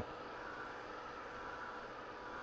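Handheld craft heat tool running steadily: an even, faint whoosh of its fan with a light hum.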